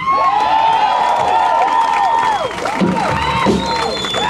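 Crowd cheering and screaming at the end of a song, many high voices overlapping in long rising and falling calls.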